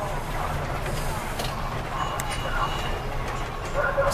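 Steady low rumble of a bus's engine and road noise heard from inside the moving bus, with faint voices in the background.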